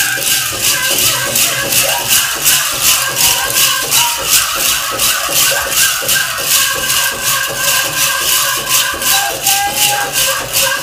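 Metal jingle cones on a jingle dress rattling in time with the dancer's steps, over drum music with a steady beat of about two to three a second.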